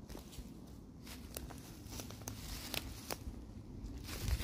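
Footsteps through fallen leaves and twigs on a woodland floor: faint, with a series of light, irregular crackles.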